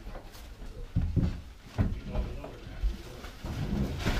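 A few dull thumps and knocks as furniture is carried through a hallway, about a second apart, with faint voices in between.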